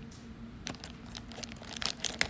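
Foil blind-bag wrapper crinkling faintly as it is handled, in scattered small crackles that bunch up near the end.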